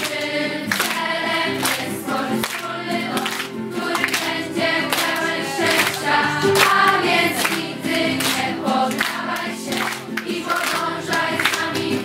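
A group of young voices singing together in unison, accompanied by strummed acoustic guitars.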